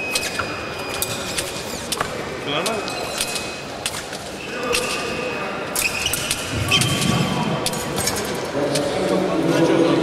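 Fencers' footwork on a sports-hall floor: shoes squeak and feet thud, with scattered sharp clicks. Voices in the hall grow louder in the last few seconds.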